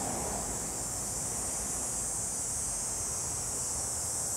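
Steady outdoor ambience: a high, even insect chorus with a faint low rumble underneath.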